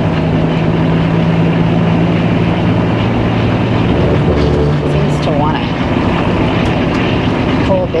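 Engine and road noise inside the cab of a Class A motorhome on a Freightliner chassis, cruising at about 45 mph: a loud, steady low drone whose pitch shifts about halfway through.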